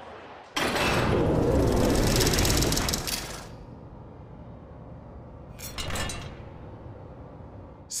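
Transition sound effect for a countdown title graphic: a sudden loud rush of noise about half a second in that holds for about three seconds and fades, then a shorter burst of noise around six seconds in.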